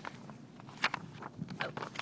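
A sheet of paper rustling and crackling as it is handled, a handful of short crackles with the sharpest a little before a second in.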